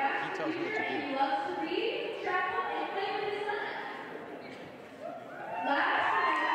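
Indistinct talking in a large hall, with no words clear. The voices dip about four seconds in, then grow louder again near the end.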